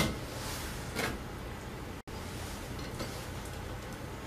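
Metal tongs clicking against a chrome wire cooling rack as bacon strips are set down: a sharp click at the start and a softer one about a second in, over a steady low room hum. The sound drops out for an instant about halfway through.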